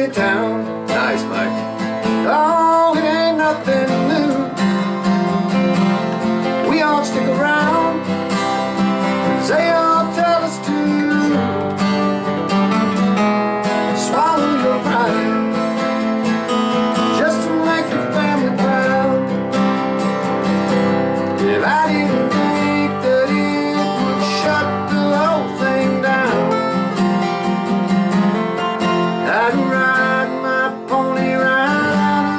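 Two acoustic guitars played together, strumming a country-rock song.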